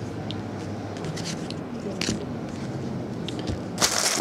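Trading cards in plastic holders being handled on a tabletop: a few light clicks and scrapes, with a louder sharp rustle near the end, over a steady room hum.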